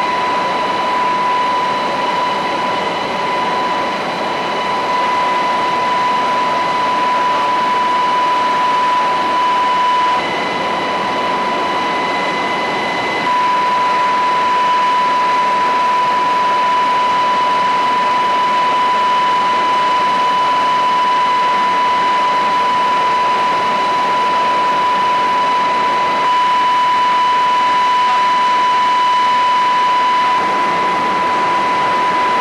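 Helicopter cabin noise: the turbine and rotor drone steadily, with a loud high whine held on one pitch. About ten seconds in, the whine steps up in pitch for about three seconds, then drops back.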